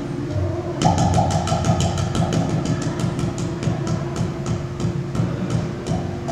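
Udu clay pot drum played by hand: a fast, even run of sharp finger taps on the clay body, about five a second, over low bass notes.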